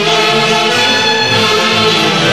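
Peruvian orquesta típica playing a tunantada: clarinets and saxophones carry the melody together over harp and violin, loud and continuous.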